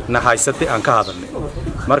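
A man speaking Somali in continuous, animated speech.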